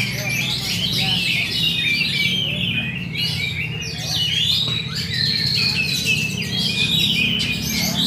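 Several caged songbirds singing at once as they compete in a song contest: a dense, unbroken run of fast chirps and short whistles.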